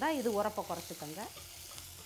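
Onions and green chillies frying in oil in an aluminium pot, a steady sizzle, with a spatula stirring them. A woman's voice speaks over it for about the first second, then the sizzle carries on alone, fainter.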